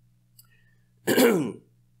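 A man clearing his throat once, about a second in, lasting about half a second.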